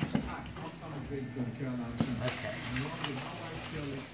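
Wood-finish fireplace mantel panels being handled and fitted onto the base frame: a sharp knock at the start and another about two seconds in, under low background voices.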